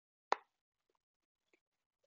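A single sharp tap of a stylus tip on a tablet's glass screen about a third of a second in, followed by a couple of very faint ticks.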